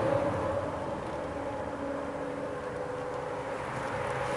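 Steady background hum and hiss inside a car's cabin, with a faint steady low tone and no distinct events.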